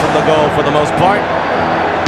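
Televised football commentary: a man's voice talking over a steady background of music and crowd noise.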